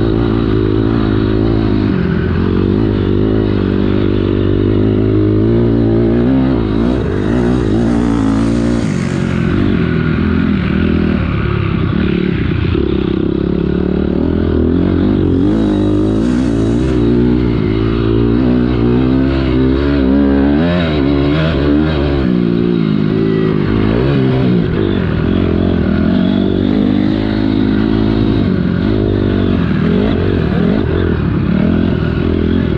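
2006 Honda CRF250R dirt bike's four-stroke single-cylinder engine under load on a motocross track. The pitch rises and falls repeatedly as the throttle is opened and rolled off through the corners and straights. Twice a brief, higher hiss comes in over the engine.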